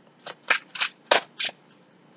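Tarot cards being shuffled by hand: five short swishes about a third of a second apart.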